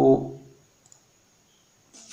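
A man's voice drawing out one word, then a quiet stretch with a couple of faint, brief computer mouse clicks.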